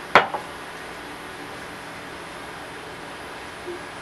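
A single sharp knock with a brief ring just after the start: a glass measuring cup set down on the countertop. After it, only a steady background hum.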